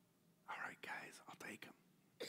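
Faint, indistinct speech, close to a whisper, starting about half a second in.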